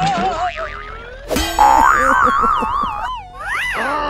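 Cartoon sound effects: warbling, wobbling boing-like tones that slide up and down in pitch, with a sudden loud hit about a second and a half in and a quick rising-then-falling glide near the end.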